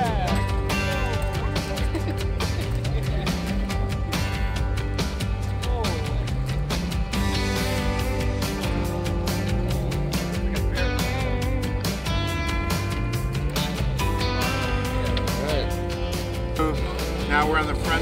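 Background music with a steady beat and a bass line that climbs in steps over and over.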